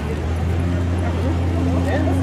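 Outdoor crowd background: faint distant voices over a steady low hum.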